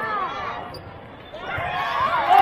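Sneakers squeaking on the court floor during a volleyball rally, a few short squeaks near the start and again near the end, over voices in the hall.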